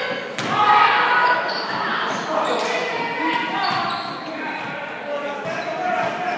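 Basketball game in a large, echoing gym: a ball bouncing on the hardwood floor, with short sharp knocks among indistinct voices of players and spectators.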